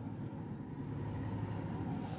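A steady, low background rumble with no distinct events.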